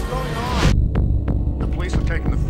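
Trailer sound mix: a low throbbing rumble under overlapping voices, with a rising whoosh that cuts off abruptly under a second in, followed by a few sharp hits.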